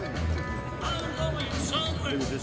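A live rock 'n' roll band playing, with a steady run of bass notes under a singing voice or lead instrument.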